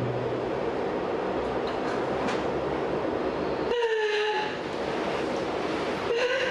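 A woman breaking into emotional crying on hearing that her pregnancy test is positive. A loud, steady rushing noise comes first, then about four seconds in a short, high cry falls in pitch.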